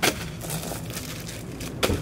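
Plastic packaging crinkling as bagged items are handled, with a sharp crackle at the start and another near the end. Under it runs a faint steady low drone from an aircraft passing overhead.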